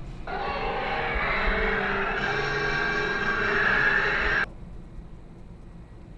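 Television soundtrack playing: a dense, sustained sound with many steady tones, starting just after the start and cutting off abruptly about four and a half seconds in.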